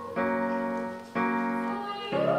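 Yamaha digital keyboard playing two chords struck about a second apart, each ringing on and fading before the next.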